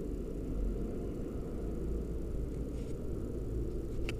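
Steady low background rumble with no distinct events, the kind of outdoor noise picked up by a camera's microphone.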